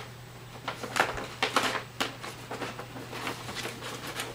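Cardboard shipping box being handled and its flaps opened: scattered, irregular rustles, scrapes and light clicks of cardboard.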